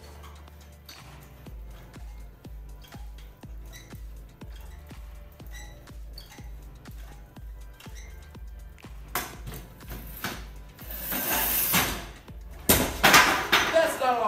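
Background music with a steady bass beat, about two pulses a second. Near the end a loud rushing noise swells up, followed by two loud bangs.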